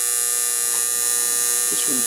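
Energized air-conditioner contactor buzzing with a steady mains hum inside a Carrier Round three-phase condensing unit; the contactor is pulled in and powered.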